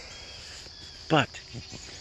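A steady, high-pitched chorus of crickets, a constant shrill drone.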